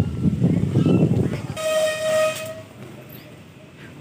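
A single steady horn toot lasting about a second, near the middle. Before it comes a stretch of loud, rough rumbling noise.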